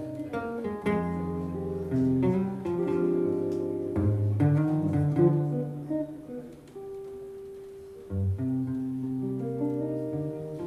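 Two archtop guitars playing a jazz duet: plucked chords and single-note lines ringing out. The playing thins to a single held note in the middle, then a strong chord comes in about eight seconds in.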